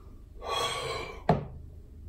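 A gasping breath out after a long drink, followed about a second and a half in by one sharp knock as a plastic shaker bottle is set down on a stone worktop.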